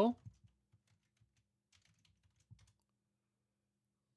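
Light keystrokes on a computer keyboard, a short irregular run of faint taps that stops about two and a half seconds in.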